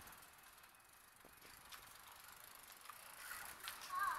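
Faint, scattered ticking of a child's bicycle freewheel clicking as the bike coasts, a little louder near the end.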